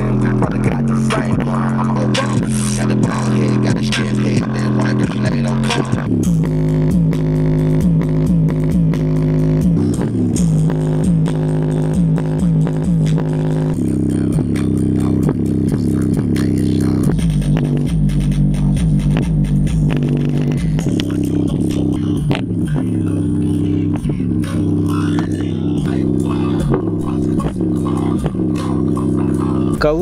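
Bass-heavy music playing loud through a JBL Flip 5 portable Bluetooth speaker with its grille removed, its woofer driven hard on bass. A deep bass line runs throughout and changes pitch every few seconds.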